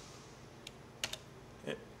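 A few light clicks of computer keys: one single click, then two in quick succession about a second in.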